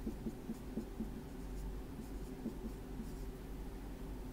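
Dry-erase marker writing on a whiteboard: a series of short, faint strokes and small taps.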